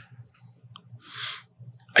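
A person's breath drawn in, a short soft hiss about a second in, over a faint low hum.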